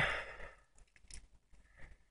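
A woman's breathy sigh of amazement, fading out within about half a second, followed by a few faint small clicks.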